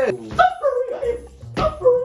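High-pitched yelping and whining: several short cries in quick succession, each bending down in pitch.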